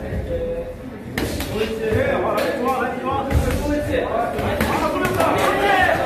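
Men shouting in an echoing hall during a boxing bout. From about a second in the shouting grows louder and denser, with repeated sharp thuds of gloved punches landing.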